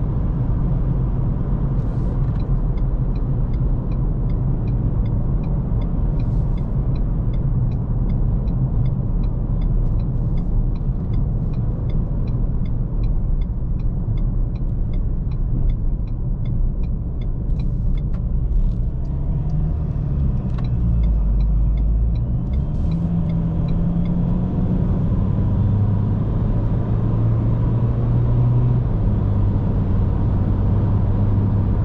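Inside the cab of a Ford Ranger 2.2 diesel pickup with automatic gearbox on the move: steady engine and road rumble. A light regular ticking, about two a second, runs from about two seconds in until about 24 seconds in, and the engine's hum becomes more distinct near the end.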